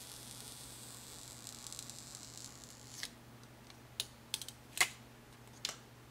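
Thin plastic backing film being peeled off a freshly applied anti-glare phone screen protector, a faint hiss, then a handful of light, sharp clicks and taps in the second half as the film comes away and the phone is handled.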